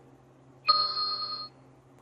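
Electronic beep from the Flexijet 3D laser measuring system: one steady beep of under a second, starting sharply about two-thirds of a second in. It signals that a measured point has just been taken.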